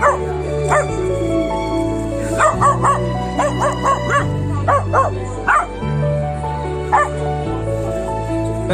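A three-month-old male Taiwanese native dog puppy barking at a stranger: about a dozen short, high barks, some in quick runs of three or four, as a guarding alert. Background music plays throughout.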